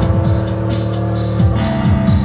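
Live electronic music from keyboards and loops: held synth chords over a steady beat of high ticks, with repeated falling bass sweeps.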